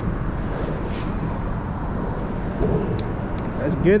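Steady low rumble of road traffic on the bridge overhead, with a few sharp clicks and a short voice just before the end.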